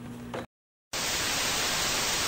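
Faint room tone with a low hum, cut to a moment of dead silence, then steady television static hiss from about a second in.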